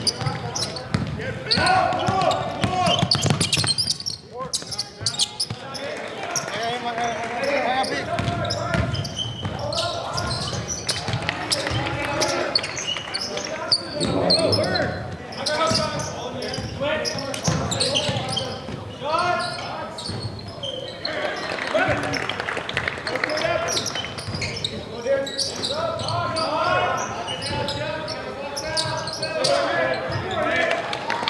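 Live basketball game sound: a basketball dribbling on a hardwood court, among shouts from players and spectators.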